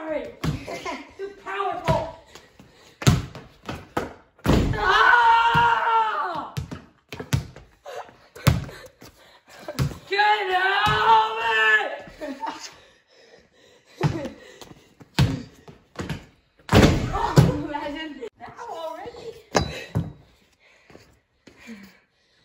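A basketball bouncing and thudding on a concrete floor in a series of sharp, irregular impacts. Two long, wavering vocal calls of about two seconds each come about four seconds in and again about ten seconds in, and are the loudest sounds.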